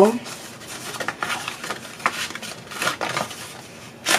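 Paper and card pieces being handled and fitted together: soft rustling with scattered light clicks and taps.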